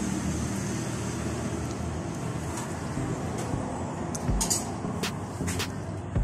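Steady rumble of motor-vehicle traffic, with an engine running close by. A few light clicks near the end, a spoon against the porridge bowl.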